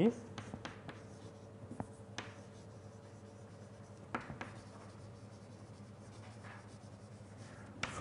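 Writing on a lecture board: faint, irregular scratches and taps of the writing strokes, a few seconds apart, over a steady faint room hum.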